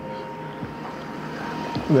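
Faint outdoor background noise with a thin steady hum running under it, and a man's voice starting briefly at the very end.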